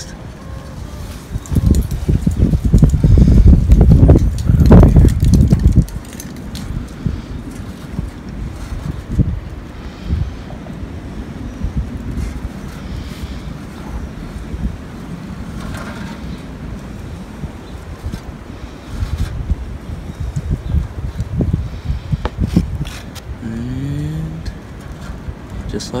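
Wind buffeting the microphone as a loud low rumble from about two to six seconds in, stopping suddenly, then a steady low outdoor background with a few faint ticks.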